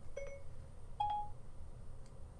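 Two short electronic beeps from Apple's Siri voice assistant, about a second apart, the second higher than the first: the assistant's tones in answer to a spoken "hey Siri" request.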